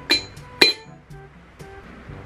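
Two sharp ceramic clinks about half a second apart, ringing briefly, as a small white ceramic teapot and its lid knock together, over quiet background music.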